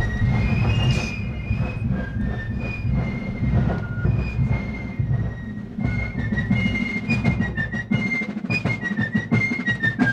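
Fife and drum corps playing a march while marching: a shrill fife melody over continuous drumming.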